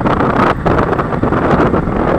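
Loud, steady wind buffeting the microphone of a camera on a moving motorcycle, mixed with the vehicle's road and engine noise, with a brief drop about half a second in.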